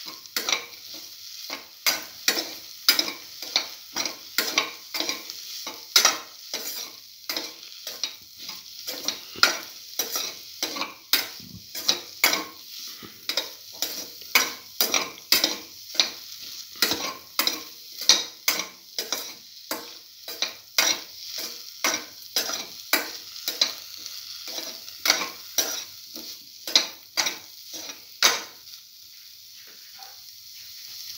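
Cubes of cottage cheese being stirred and fried in hot oil in a pan: quick scraping strokes against the pan, about two a second, over a steady sizzle. The stirring stops near the end, leaving only the sizzle.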